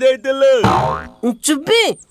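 A cartoon boing sound effect: a short falling twang about a third of the way in, between spoken lines.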